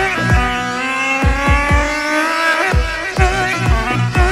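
Dabke dance music with a heavy, steady drum beat, its lead melody gliding slowly upward in pitch partway through.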